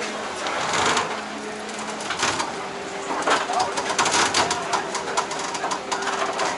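Vaporetto water bus's engine drone as it comes alongside the stop, with a run of knocks and rattles about three to five seconds in and voices in the background.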